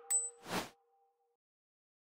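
Chime of an animated logo sound effect: two ringing tones fading out, a short high click just after the start, and a brief burst of noise about half a second in.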